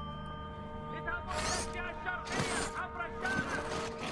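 Remote-controlled bomb-disposal robot's motors and tracks whirring and creaking as it is steered, in three surges about a second apart, over a steady low drone.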